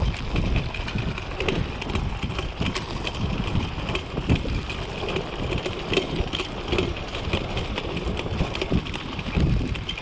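Dog sulky rolling fast over a dirt trail: a steady low rumble of the wheels on the ground, with many small clicks and rattles from the rig.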